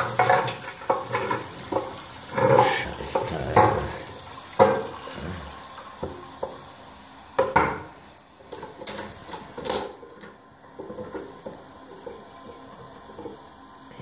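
Irregular knocks and clatters of hard fittings, mixed with a little water noise, from handling a toilet cistern and its flush mechanism, which is sticking. The knocks come thickly at first and thin out in the second half.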